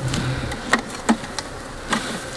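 Honeybees buzzing at an opened hive, with a few sharp knocks of wooden hive frames and a hive tool being handled.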